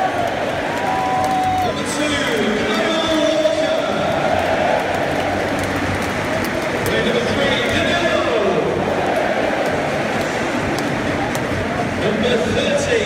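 Large football-stadium crowd: thousands of voices singing and shouting together at a steady, loud level.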